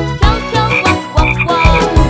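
Cartoon frog croaking sound effect, short croaks in three pairs, over upbeat children's song music with a steady beat.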